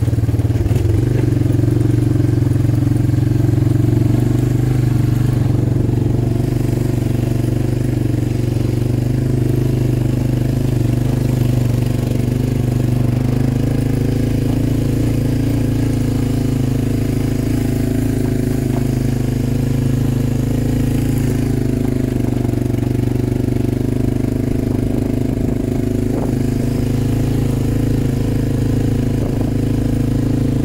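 ATV engine running steadily as the quad rides along a dirt trail.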